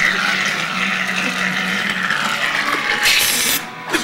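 Aerosol can spraying with a steady hiss, a louder burst about three seconds in, as cream is sprayed onto a sleeping man's face.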